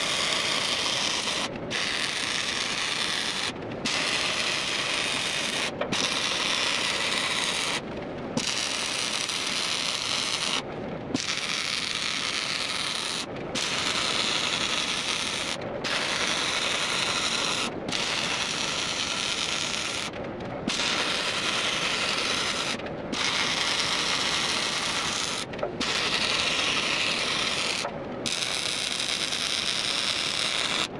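Electric arc welder crackling steadily as steel ripper shanks are welded to a heavy steel frame. The arc runs in stretches of about two seconds, stopping briefly between each, about a dozen times.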